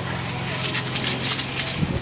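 Pickup truck engine idling with a steady low hum, which drops out just before a short burst of voice near the end.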